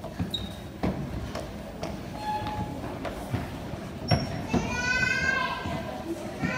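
Children's footsteps knocking irregularly on stage steps as they climb up one after another, over low chatter. A high child's voice calls out for about a second near the end.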